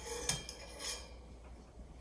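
Faint small metallic clicks and scrapes of a drum hi-hat clutch being worked off the top of the stand's pull rod, with a few light clinks in the first second.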